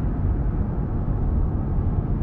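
Steady low rumble of a car driving along a highway, road and engine noise heard from inside the car.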